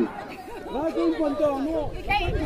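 People talking and chattering, with voices overlapping.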